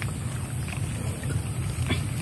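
Steady low wind rumble buffeting the microphone, with a light click from handling the mesh bag near the end.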